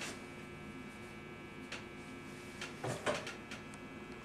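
Low steady room hum with a few faint clicks and soft handling knocks and rustles, a little louder about three seconds in, as a staple gun is picked up and set against the chair's wooden frame.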